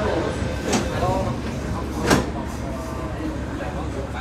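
MTR train's sliding passenger doors closing: a sharp knock about a second in, then the doors meeting with a louder thud about two seconds in, over the train's steady low rumble.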